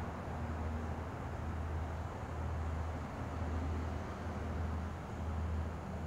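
A steady low hum with an even hiss of background noise and no distinct events.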